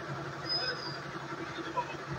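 Outdoor background sound: faint distant voices over a steady low engine hum, with a brief thin high whistle about half a second in.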